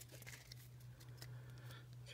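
Near silence: a steady low hum with a few faint rustles and ticks of Pokémon trading cards being shifted in the hands.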